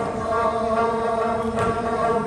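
Voices singing a Tibetan song in long, held notes, accompanied by strummed dranyen, the Tibetan long-necked lute.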